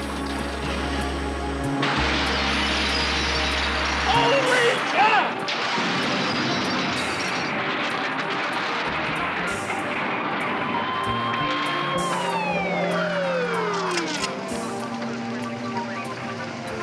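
A car crash sound effect under a music score: a police car rolls over with a loud squeal and smash about four to five seconds in, then a long stretch of grinding noise that dies away near the end as a falling tone sounds.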